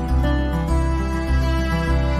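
Gentle instrumental background music with a bass line whose notes change about every half second.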